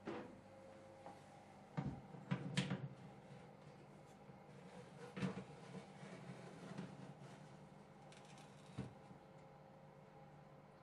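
Metal baking tray knocking and scraping against the oven shelf as it is slid into the oven: a cluster of clatters about two seconds in, then single knocks around five and nine seconds. A faint steady low hum runs underneath.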